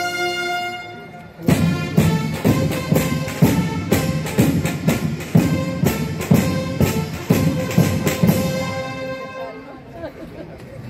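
Military brass band playing. A held brass chord dies away, then about a second and a half in the band strikes up with drum and cymbal beats about two a second under brass chords. It closes on a held note that fades near the end.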